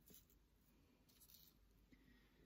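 Near silence, with a couple of faint, brief rustles from hands placing rose petals on a wooden altar board, one just after the start and one a little past the middle.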